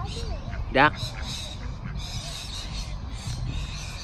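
Parrots calling over and over in the trees, faint, short, high squawks.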